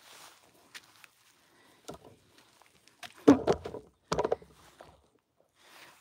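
Footsteps and handling noise from a hand-held phone while walking: scattered soft rustles and knocks, with the loudest bunch of knocks and rubbing about three to four and a half seconds in.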